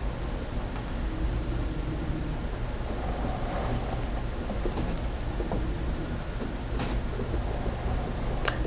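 Steady low background rumble, with a few faint clicks as the multimeter test leads are held against the capacitor's wires.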